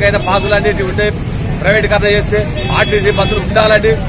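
A man speaking in Telugu, close to the microphone, over a steady low rumble of street noise.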